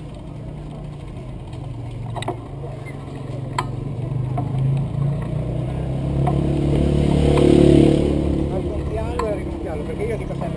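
Outdoor street-market crowd with people's voices mixed together, over a low motor hum that grows louder to a peak about three-quarters of the way through and then eases off. A few sharp clicks stand out.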